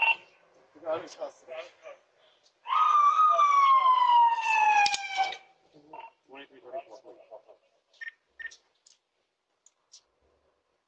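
Police car siren giving one short falling wail about three seconds in, lasting a couple of seconds before cutting off, with bits of talk around it.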